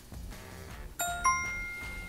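Bright two-note electronic chime, a ding-dong: the first note sounds about a second in and a higher second note follows a quarter second later, both ringing on and fading slowly.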